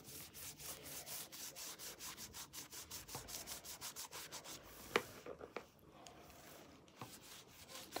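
A drawing tool rubbing in quick back-and-forth colouring strokes across a notebook cover, about five strokes a second. After about five seconds the strokes give way to a few light taps and a short pause.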